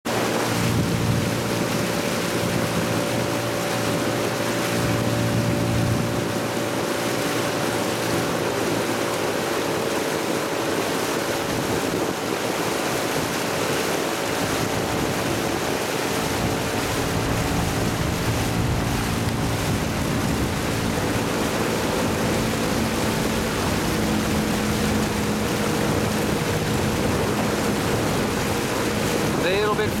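Small boat's outboard motor running steadily at low speed, with wind on the microphone and water noise.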